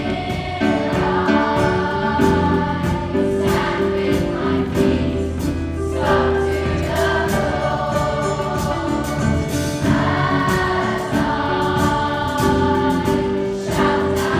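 Massed choir of school-age voices singing a pop song in unison phrases, backed by a live band of piano, guitars and bass with a steady beat.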